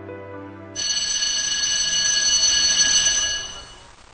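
Soft background music ends under a loud, bright bell-like ringing that starts about a second in. It holds several steady high tones for about three seconds, then fades out near the end.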